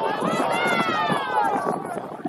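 Several people shouting across a rugby pitch, with one long, high-pitched yell that rises and then falls in pitch over about a second and a half.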